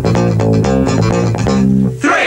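Live band music driven by an electric bass guitar playing a steady line, with a quick, even beat of percussive strokes over it.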